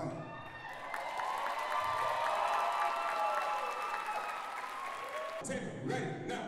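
Audience applauding and cheering, with long, high cheers held over the clapping. The clapping stops abruptly about five and a half seconds in.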